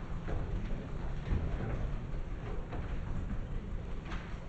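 Footsteps and small knocks of people walking in, over a steady low rumble of room noise.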